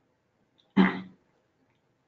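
A person clears their throat once, briefly, a little under a second in.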